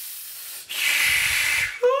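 A man hisses air sharply in through clenched teeth for about a second, reacting to the burning heat of chili. Near the end his voice breaks in with an exclamation.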